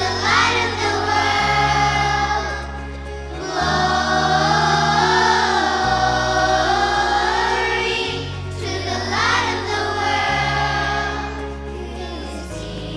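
Children's choir singing a Christmas worship song, with a girl's voice leading on a microphone, over instrumental accompaniment whose sustained low bass notes change about every two seconds.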